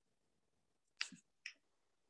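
Near silence, broken about a second in by a short sharp click, with a second, fainter one about half a second later.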